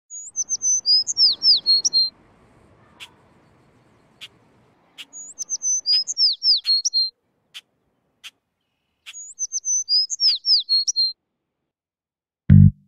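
A songbird singing the same short phrase of high, falling whistled notes three times, about four seconds apart, with single sharp call notes between the phrases.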